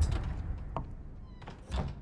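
A deep low rumble fading away, then a handful of short, sharp clicks and knocks, the loudest near the end.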